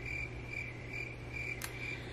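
Cricket chirping, a steady run of short high chirps at one pitch, about two or three a second: the stock 'crickets' sound effect for an awkward silence.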